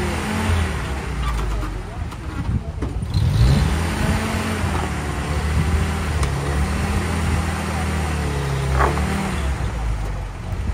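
Engine of a vintage 4x4 running at low revs, its speed rising and falling several times, with a clear rev-up about three seconds in.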